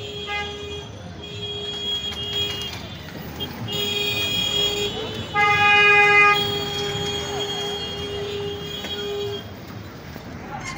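Street traffic with vehicle horns sounding in long, repeated blasts, and one louder horn honking for about a second, about five and a half seconds in.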